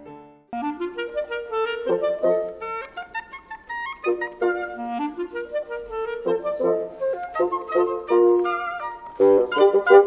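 Clarinet ensemble playing classical chamber music, a melody of quick, short notes. It starts abruptly about half a second in and grows fuller and louder about nine seconds in.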